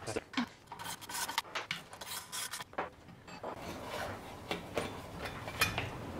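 Hand-tool and metal-part noise as nuts are worked off the heater's mounting studs and the mount is taken off: a quick run of clicks and scrapes in the first few seconds, then softer rubbing and handling.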